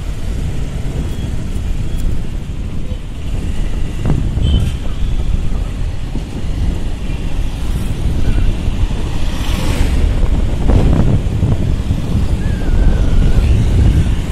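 Wind buffeting the microphone of a phone carried on a moving motorbike, over steady road and traffic noise that swells as vehicles pass and is loudest near the end.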